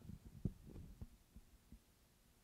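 Faint handling noise from a handheld microphone: a few soft, irregular low thumps as the mic is shifted in the hand, the strongest about half a second in, dying away after a second.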